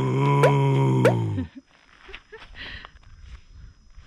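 A man's voice giving one long, steady, low growl in imitation of a dinosaur roar, with three short sharp clicks over it; it ends about a second and a half in.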